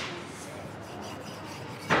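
Hands rolling and rubbing bread dough on a worktop, a soft steady rubbing.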